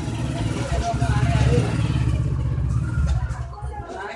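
An engine running with a low, rapid pulsing, fading away after about three seconds.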